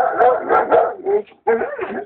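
Dog barking in a quick run of barks and yelps, with a short break a little past halfway.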